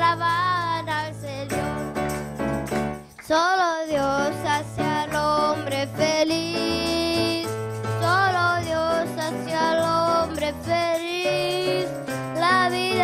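Worship song sung by young girls into microphones over instrumental backing: a wavering sung melody above a steady bass line, with a brief drop a little over three seconds in.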